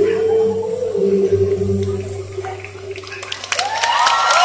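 A female singer's amplified voice holds one long final note over the band, fading out about three seconds in. The audience then starts clapping, cheering and screaming near the end.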